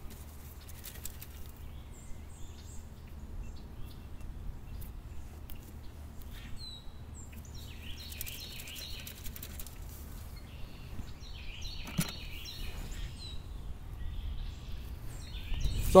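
Quiet outdoor ambience: small birds chirping now and then over a low steady rumble, with soft rustling of dirt shaken through a hand sifter and one sharp click about twelve seconds in.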